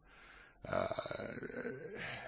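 A man's drawn-out hesitation 'uh', starting about half a second in after a brief pause and held for over a second.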